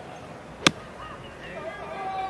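Golf club striking the ball on a full swing from the fairway: one sharp crack about two-thirds of a second in.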